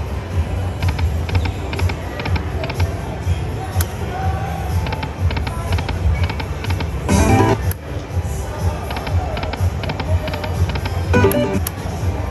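Dragon Link 'Happy & Prosperous' slot machine spinning its reels: runs of quick ticks as the reels turn and stop, a short chiming jingle about seven seconds in and another near the end, over a steady low hum of background music.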